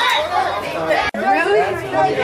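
People chatting, speech only, with a momentary dropout in the sound about a second in.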